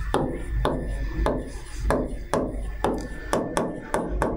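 Stylus tapping and knocking against an interactive display screen while handwriting: about a dozen sharp, irregular taps.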